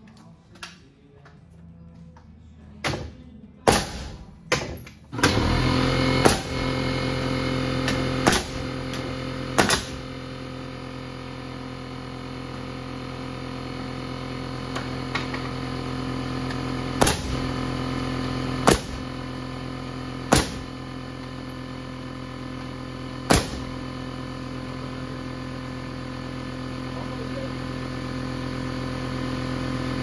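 Pneumatic framing nailer firing about ten nails into wooden framing, in quick groups near the start and then spaced a second or more apart. From about five seconds in, an air compressor motor runs with a steady hum under the shots and cuts off abruptly at the end.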